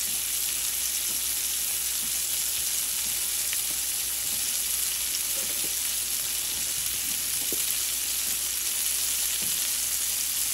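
Sliced white onion frying in melted butter in a nonstick pan, a steady sizzle.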